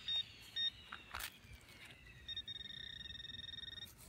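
Metal detector beeping over a target in a freshly dug hole: two short high beeps, then a single knock about a second in, then a long steady high tone that signals metal close by.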